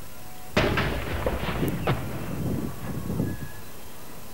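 A single gun of the King's Troop's 21-gun salute firing a blank round, a 13-pounder field gun: one sharp report about half a second in, with echoes dying away over about three seconds.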